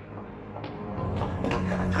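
Tense film score: low sustained tones that swell and grow louder through the second second.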